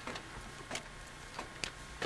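Footsteps on a metal grated staircase: a few faint, scattered taps and clicks.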